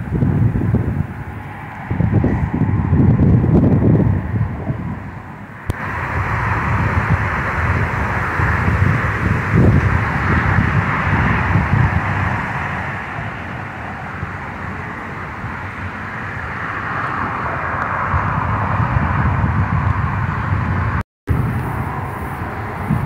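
Jet airliner passing low, its engine noise a steady rushing hiss that comes in about six seconds in and grows louder toward the end. Wind buffets the microphone in the first few seconds, and the sound drops out briefly just before the end.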